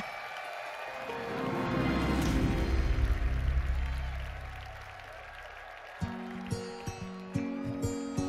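Arena crowd cheering swells and fades over the first few seconds, then about six seconds in a bright acoustic guitar intro starts with plucked and strummed notes.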